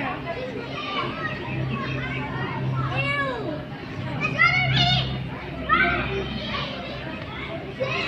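Children's voices chattering and calling out in the background, with a cluster of high-pitched shouts about four and a half seconds in, over a steady low hum.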